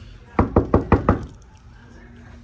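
Knuckles knocking on a closed panelled door: about five quick raps in under a second.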